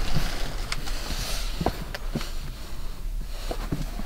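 Handling noise from a fitted baseball cap being turned over in the hands: a few light, separate taps and rustles over a steady low hum.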